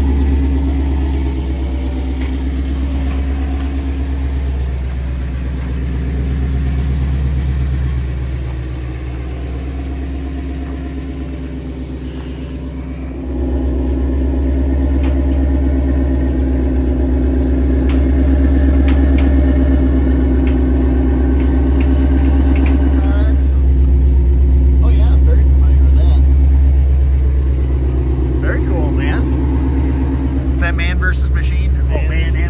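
A Ford Mustang race car's V8 engine runs steadily at idle, and gets louder about 13 seconds in.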